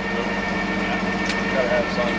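An engine idling steadily, a constant mechanical hum, with people talking faintly nearby.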